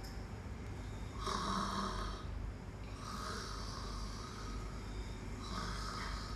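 A person breathing audibly through a face mask: three slow breaths about two seconds apart, over a low steady hum.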